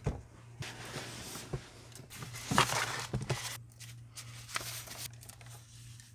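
Rustling and handling noise as a person puts on over-ear headphones and shifts in a fuzzy costume, loudest about halfway through. A steady low hum runs underneath.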